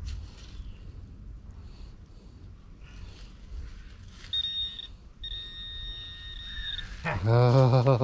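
Metal detector target tone: a brief high steady beep, then a longer steady tone of about a second and a half, signalling metal right at the dig hole. A loud excited laugh and voice break in near the end.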